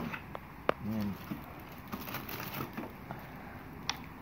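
Things being rummaged and lifted out of cardboard boxes: a single sharp click just under a second in, scattered light knocks and rustling through the middle, and another click near the end.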